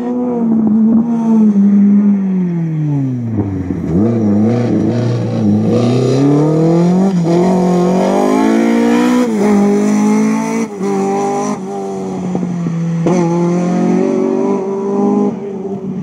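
BMW E30 rally car engine on a stage. The revs fall away for about four seconds as it slows for a corner, then climb again through the gears with short breaks at the shifts, and then run fairly steadily at high revs.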